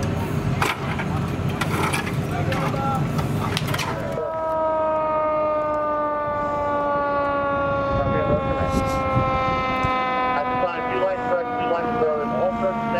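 For about four seconds, noisy fireground sound with scattered knocks. Then a fire engine's siren sounds and winds down in a slow, steady fall in pitch, as a mechanical siren does when it coasts down.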